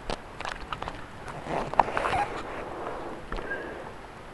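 Handling noise from a handheld camera being moved: a scattered series of sharp clicks, taps and knocks, with fainter rustling between them.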